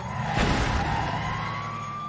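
Cartoon fire truck speeding off: a rush of noise about half a second in over a steady engine rumble, then its siren sounding as one steady, slowly rising tone.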